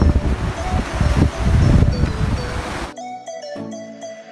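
Strong wind buffeting the microphone over the noise of a rough sea, under background music with a simple melody. The wind and sea noise cuts off abruptly about three seconds in, leaving only the music.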